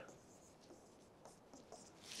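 Near silence, with the faint scratch of a marker writing on a whiteboard in a few short strokes.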